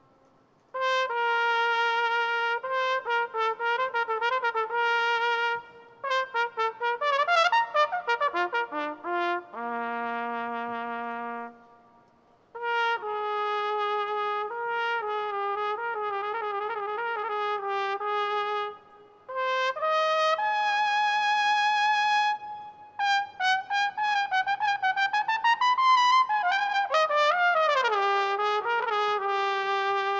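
A solo trumpet plays an unaccompanied melody in phrases, with short breaks between them and vibrato on some held notes. Near the end a note slides down in pitch before a final held note.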